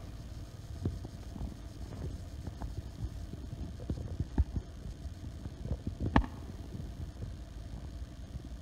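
Steady low rumble of wind buffeting a phone microphone outdoors, with a few scattered short knocks; the loudest knock comes about six seconds in.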